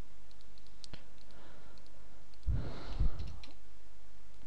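A few light computer mouse clicks, then a short low, noisy rustle about two and a half seconds in, over a faint steady hum.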